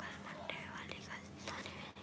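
Faint whispered speech over a low steady hum, with a few small clicks.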